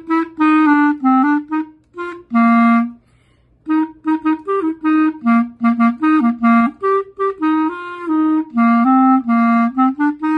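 Solo clarinet played by a student: a run of short, separated notes with a brief pause about three seconds in. It is a halting performance by a player out of practice for two years, which he says did not go well.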